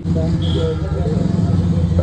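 A steady low motor hum with no speech over it.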